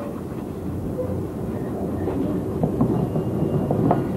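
Wooden rolling pin rolled over a wet strip of papyrus pith on a board, a low, steady rumble with a few faint clicks, pressing the water out of the strip.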